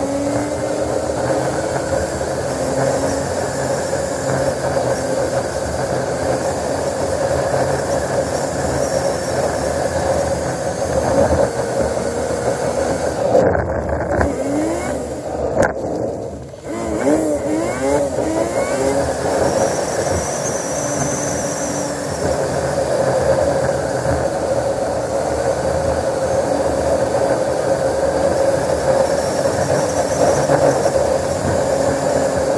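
Road vehicle driving at speed: a steady drone of engine, tyre and wind noise. About halfway through the sound briefly drops away, then a few quick rising and falling engine-pitch glides follow.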